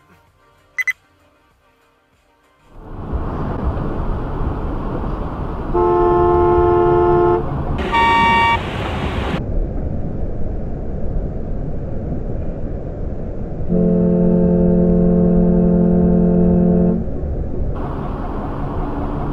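Car horn honking over steady road noise inside a moving car: a honk of about a second and a half, a brief higher-pitched beep, then a long blast of about three seconds.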